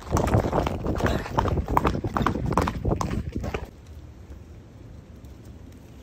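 Horse's hoofbeats on a dirt road, a quick, uneven run of knocks, stopping suddenly about three and a half seconds in. After that there is only a faint low background.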